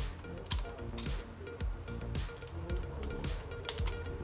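Background music, with a handful of short sharp crackles and clicks from a thin plastic protective film being peeled and handled by hand.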